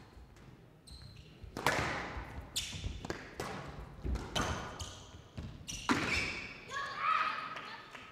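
Squash ball hit back and forth in a rally, racket strikes and ball hitting the walls of a glass court: a run of sharp cracks about a second apart, each ringing briefly in the hall.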